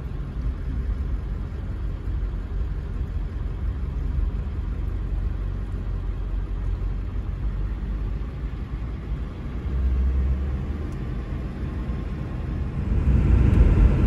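Steady low rumble of a vehicle heard from inside a pickup truck's cab, swelling briefly about ten seconds in.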